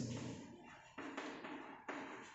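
Chalk tapping and scraping on a blackboard as letters are written, with two sharp strokes, one about a second in and one near the end.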